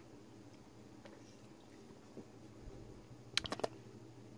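Faint, quick clicks and taps as an aluminium beer can is picked up and handled: about four sharp clicks in quick succession a little after three seconds in, over a quiet room.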